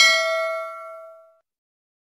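Notification-bell 'ding' sound effect of a subscribe-button animation: one bright, bell-like ring with several overtones that fades away over about a second and a half.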